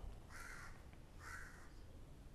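Two short, faint bird calls, about a second apart, over low background rumble.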